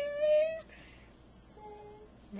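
Chihuahua giving a strange, cat-like whining yowl, held on one pitch for about half a second, then a fainter short whine near the end.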